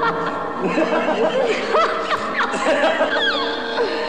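Laughter, in a run of short chuckles, over background music with held notes.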